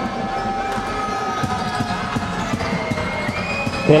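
Basketball game sounds in a sports hall: a ball bouncing on the hardwood court amid steady crowd and hall noise, with small irregular knocks throughout.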